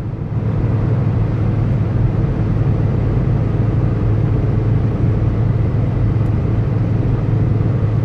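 Steady drone of a car cruising on the highway, heard inside the cabin: a low engine hum under the rush of tyre and road noise.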